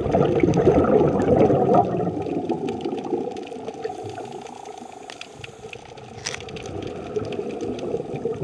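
Underwater sound of a scuba diver breathing out through the regulator: a bubbling rush, strongest for the first couple of seconds, quieter in the middle and building again near the end as the next exhalation starts. Scattered faint clicks and a steady faint hum sit underneath.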